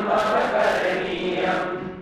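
Voices chanting together in Sanskrit, a sustained sung recitation that fades out near the end.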